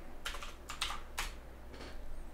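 Computer keyboard keys clicking: a quick run of about six keystrokes in the first second or so, then one more near the end, as a copied URL is pasted into the browser's address bar and entered.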